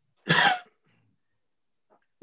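A single short cough from a man, heard over a video-call connection.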